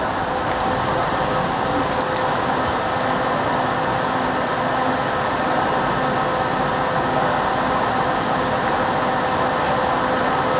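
Steady whirring noise of a bicycle rolling along, with a faint steady whine running through it.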